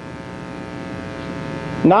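A steady electrical buzz with many even overtones, growing slightly louder, fills a pause in a man's speech; he starts talking again near the end.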